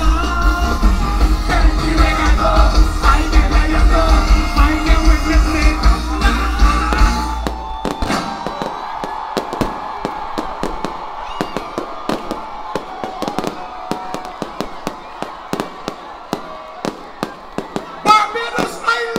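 Live soca band music with a heavy bass line, which cuts off about halfway through. Fireworks follow, bursting overhead in a quick, irregular series of sharp bangs and crackles.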